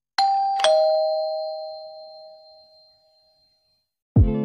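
A two-note descending ding-dong chime, like a doorbell, sounded as an intro sound effect: a higher note and then a lower one about half a second later, both ringing on and fading away over about three seconds.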